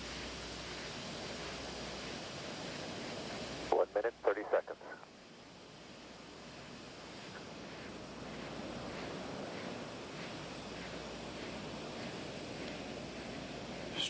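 Steady hiss of background noise on the launch broadcast's audio feed, with a short burst of a voice, about a second long, just under four seconds in.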